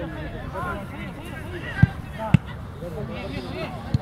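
Two sharp thuds of a football being kicked, about half a second apart, with faint shouting voices from across the pitch.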